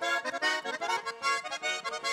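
Russian garmon (button accordion) played solo: a quick instrumental passage of melody over chords, with the notes changing several times a second.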